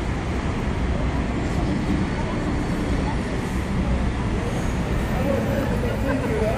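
Steady city street background: traffic rumble with faint voices of passers-by.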